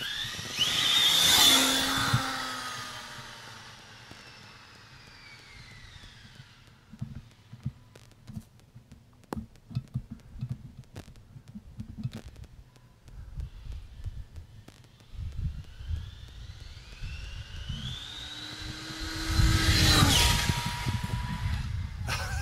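ARRMA Infraction 6S brushless RC car on a high-speed run. Its motor and drivetrain whine sweeps past loudly about a second in and falls in pitch as it speeds away, then rises again to a second loud pass near the end. In between there is a low rumble with scattered clicks.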